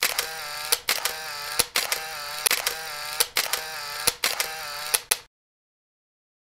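Camera shutter firing in a rapid series, about six releases just under a second apart, with a motor-drive whir between the clicks. It cuts off suddenly near the end.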